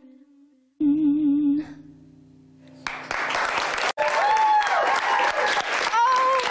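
The last held note of a song: a sung note with vibrato over a sustained electric-keyboard chord, dying away. About three seconds in, a studio audience bursts into applause and cheering, with high whoops.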